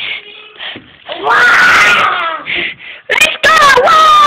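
High-pitched children's voices making wailing, squealing play sounds without clear words. Short faint cries come first, then a long wavering cry in the middle, then several sharp loud cries near the end.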